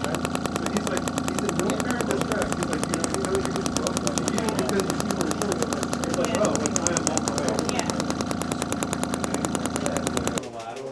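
Radial shockwave therapy handpiece firing pulses into the hamstring origin at the sit bone: a rapid, even train of sharp clicks over a steady machine hum, set to a pressure of about 1.5 to 2.5 bar and just turned up.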